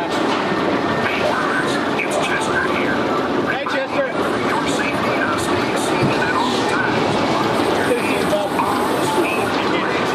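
Spinning coaster car rolling along its steel track, a steady rumbling noise with indistinct voices behind it.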